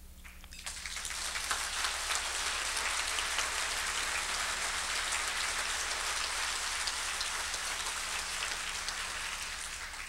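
Audience applauding: many hands clapping, swelling up in the first second and holding steady, easing slightly near the end.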